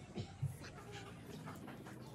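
Faint eating noises from people eating with their hands: soft chewing and small mouth clicks, with two short low thumps in the first half second.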